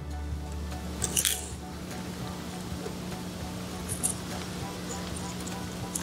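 A steady low hum under faint handling sounds of small metal jewelry findings and paper beads, with a brief click or rustle about a second in and another about four seconds in.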